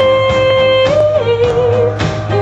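A woman singing one long held note over a recorded pop backing track with drums and guitar; the note steps up briefly about halfway through, then settles back down.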